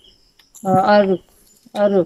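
A person's voice calling out a drawn-out "oh" twice, the second starting near the end.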